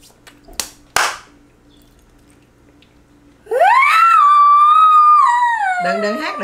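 Two sharp claps about half a second apart near the start. Then, from about halfway in, a long, high-pitched vocal exclamation that rises, holds and slowly falls, like a drawn-out "oooh".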